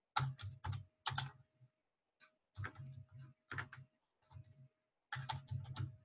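Typing on a computer keyboard: four quick runs of keystrokes with short pauses between them.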